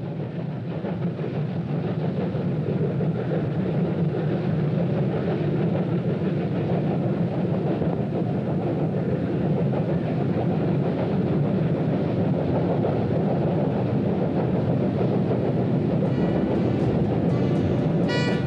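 Heavy ore train double-headed by two steam locomotives, one a DB class 043 oil-fired 2-10-0, running past close by. It makes a steady, dense rumbling din that builds over the first couple of seconds. Music comes in near the end.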